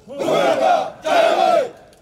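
A formation of Indonesian Navy marines shouting in unison: two loud group shouts, each just under a second long, the second starting about a second in.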